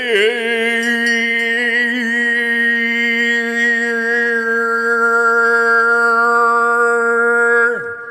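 Meditation music: one long chanted note, sliding up into pitch at the start, held with a slight waver, and falling away near the end, over a steady drone.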